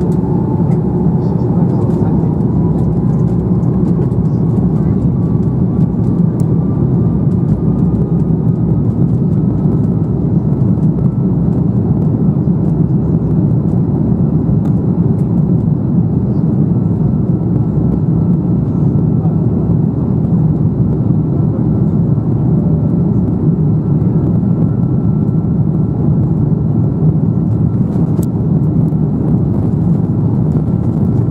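Airbus A330-300 jet engines heard inside the cabin over the wing, spooling up for takeoff. A whine rises over the first ten seconds and then holds steady above a loud, constant low engine and runway noise.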